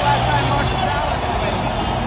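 Loud, steady noise of a packed football stadium crowd, with a voice carried over the public-address system.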